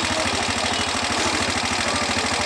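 Motorcycle engine idling steadily, a rapid even pulsing.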